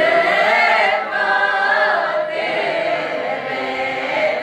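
Udmurt village folk choir, mostly women's voices, singing a folk song together in full voice, with a short break between phrases about a second in.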